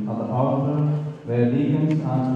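A man's voice chanting a liturgical prayer in long held notes, with a short breath about a second in.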